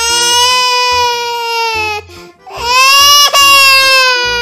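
A child's voice crying in two long, high-pitched wails, each sliding down in pitch as it ends, over background music with a steady beat.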